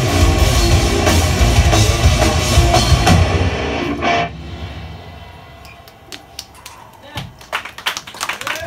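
Heavy metal band playing live, with drum kit and distorted electric guitars, until the song ends on a final hit about four seconds in. The sound then dies away, and scattered audience clapping starts and grows near the end.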